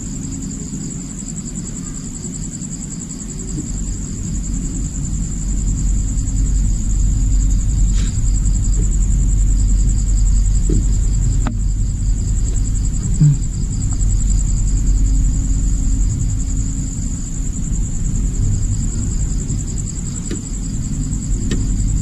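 Crickets chirping in a steady high trill, over a low rumble that grows louder a few seconds in, with a few faint knocks.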